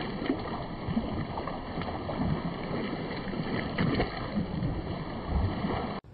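Footsteps in sneakers splashing through shallow rainwater on a flooded road, one wet splash after another at a walking pace.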